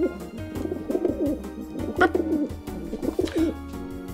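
Dove-like cooing in three wavering phrases, over steady background music.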